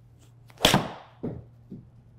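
Titleist T100S 7-iron striking a golf ball off a hitting mat: one sharp crack about half a second in, then two fainter knocks. It is a shot the golfer counts among his misses.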